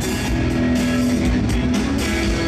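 Rock band playing live, with electric guitars over a drum kit. The music is loud and steady, with sustained guitar notes and a regular drum beat.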